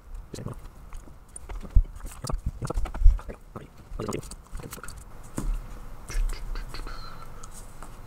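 Scattered clicks, taps and knocks of handling: a cat rubbing against the camera, then small plastic parts and a servo being handled on a desk. Two heavier thumps come about two and three seconds in.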